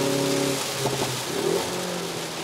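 Hyundai Veloster N's turbocharged 2.0-litre four-cylinder engine heard from inside the cabin, holding a steady note that breaks off about half a second in as the driver lifts, with a lower engine note coming back near the end. A steady hiss of tyres on the wet track runs underneath.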